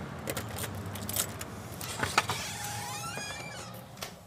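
Glass shop door being opened: several sharp clicks of the handle and latch, then a rising squeak about three seconds in, over a steady low hum.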